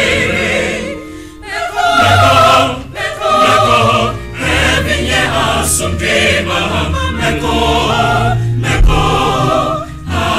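A choir singing a Ghanaian choral work in a local language, in phrases with short breaks between them, over a steady low bass line.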